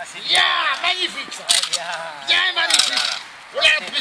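Excited human voices calling out in short bursts, with a few sharp cracks or slaps in between, about a second and a half in and again near three seconds.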